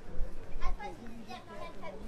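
Passersby talking close by on a busy street, including high-pitched voices like a child's.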